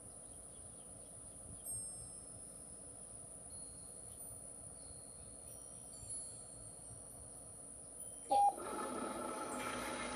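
Treat & Train remote treat dispenser going off about eight seconds in: a short beep, then its motor whirring and kibble rattling out into the tray as a treat is delivered. Before that there is only faint background noise with a few short high chirps.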